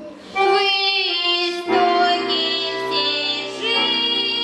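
A girl singing solo in Russian over instrumental accompaniment; after a brief pause at the start her voice comes back in, held notes wavering with vibrato, and a low bass part joins a little before halfway.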